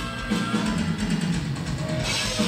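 Live rock band playing loud and steadily: drum kit and bass guitar under electric guitar, as the harmonica part hands over to guitar.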